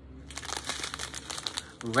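Small clear plastic zip bags of diamond-painting drills crinkling as they are handled and swapped, a dense run of crackles.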